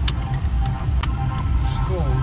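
Steady low rumble of a car driving on a rough unpaved road, with two sharp knocks about a second apart; music plays faintly over it.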